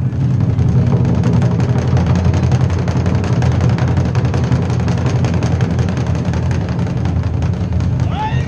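Japanese taiko drum ensemble playing a continuous, fast rhythm of dense, heavy beats, as an instrumental stretch between sung phrases.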